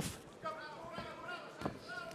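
Three short, dull thuds in a kickboxing bout, from blows landing and feet on the ring canvas, the last and loudest near the end, under faint shouted voices.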